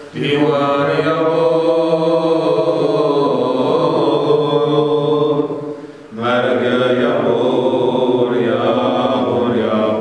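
Male voices chanting a Yazidi religious hymn in long, held, slowly wavering phrases. There is a short break for breath about six seconds in, before the next phrase.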